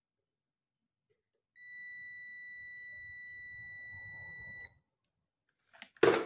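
Digital multimeter's continuity beeper giving one steady, high-pitched beep lasting about three seconds, starting about a second and a half in, while its probes rest across the lugs of a hand-wound pinball coil: the sign that the coil winding is continuous.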